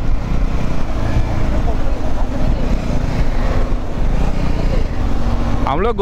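Benelli TRK 502X parallel-twin motorcycle riding at highway speed: a steady low engine and road rumble under wind buffeting the microphone. A voice begins right at the end.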